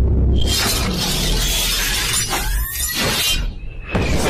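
Trailer-style cinematic sound effects: a loud, sustained shattering crash over a deep rumble, with a couple of rising sweeps about two and a half seconds in, and music underneath.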